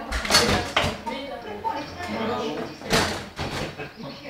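Table football being played: sharp clacks of the ball being struck and the rods knocking against the table, several in the first second and two more about three seconds in, over people's voices.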